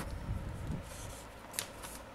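Faint scratching of a pen writing on paper, with two short ticks near the end.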